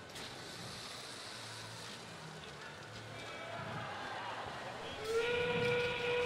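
FRC field's endgame warning sound, a steam-train whistle, starting about five seconds in and holding one steady pitch: the signal that 30 seconds remain in the match and the endgame has begun. Before it, only faint arena background noise.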